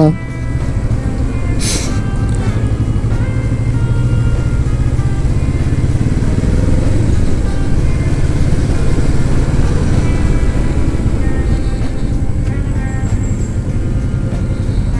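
Kawasaki Vulcan S 650's parallel-twin engine running steadily as the motorcycle rides through traffic, with wind and road rumble on the microphone. A brief hiss comes about two seconds in.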